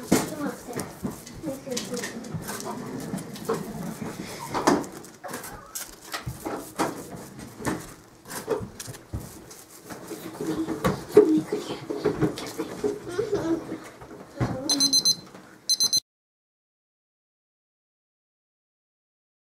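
Toast being buttered by rubbing a firm stick of butter straight across each slice: a busy run of scraping, crunching and handling clicks. Near the end a digital kitchen timer beeps in two short bursts, marking the 15 seconds, and the sound then cuts off.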